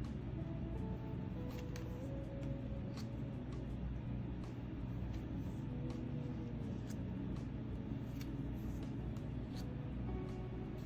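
Soft background music with a few held, stepping notes over a steady low hum, and scattered light clicks and slides of tarot cards being moved off the pile.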